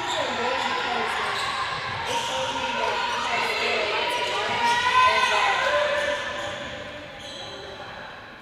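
Basketball play in a large, echoing hall, with voices mixed in. The sound swells about five seconds in, then fades away.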